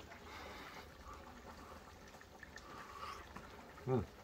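Faint steady simmer of plov broth (zirvak) in a cast-iron kazan, the meat, carrots and spices cooking before the rice goes in, under a low hum.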